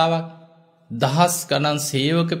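A Buddhist monk preaching in Sinhala in a chanted, sing-song delivery. A long held syllable fades out, there is a short pause, and then the recitation resumes about a second in.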